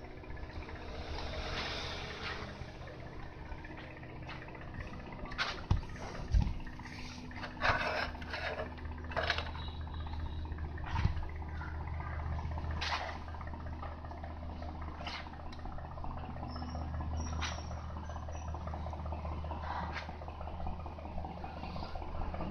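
Light clicks and taps from multimeter test probes being handled and placed on solder points of a television circuit board, over a steady low hum and background noise.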